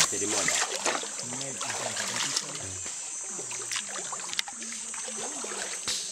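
Feet wading through shin-deep floodwater, sloshing with a few short splashes, under voices calling and talking and a steady high-pitched insect drone.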